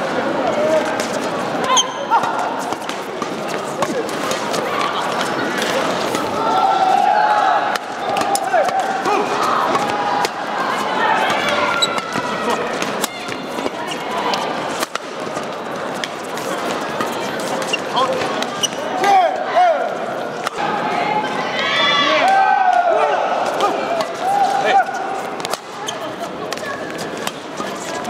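Badminton doubles rally: rackets striking the shuttlecock again and again in quick exchanges, with shoes squeaking on the court floor in bursts during the second half. Voices chatter in the hall behind it.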